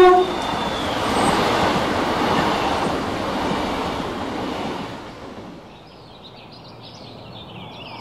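Train sound effect: a short whistle toot, then the rumbling rush of a moving train that slowly fades away over about five seconds. Faint bird chirps come in near the end.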